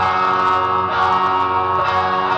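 Stratocaster-style electric guitar playing sustained lead notes, moving to a new pitch about once a second.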